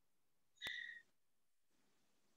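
Near silence, broken about half a second in by one short, high, steady-pitched beep that starts with a click and lasts under half a second.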